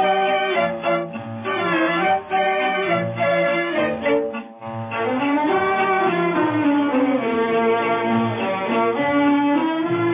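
Instrumental interlude of an old Hindi film song: a violin section plays a gliding melody over tabla accompaniment, with a brief dip about four and a half seconds in.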